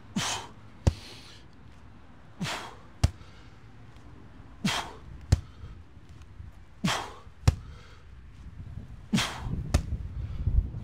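Five repetitions of a man doing squat rows with a 75-pound sandbag, about two seconds apart. Each rep is a forceful breath followed about half a second later by a short, sharp smack of the bag.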